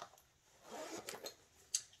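Small handling noises of a pencil pouch of pens being put away: a click at the start, a short rustle about a second in, and a sharp tick near the end.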